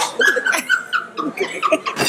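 A woman's voice making a quick run of short high-pitched notes, about four a second, between laughter and mock-singing.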